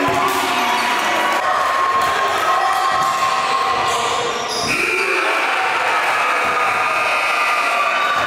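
Basketball bouncing on a hardwood gym floor during play, over a steady background of held tones.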